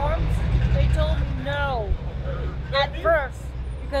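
Low rumble of heavy street traffic, louder in the first two seconds as a large vehicle goes by, under a few brief fragments of speech.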